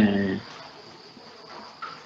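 A man's voice trailing off on a drawn-out syllable, then a pause filled by a faint, steady, high-pitched tone over background hiss.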